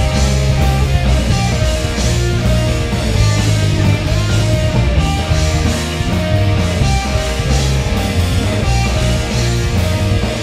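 Pop punk band playing live, with electric guitars and a drum kit going steadily through a song.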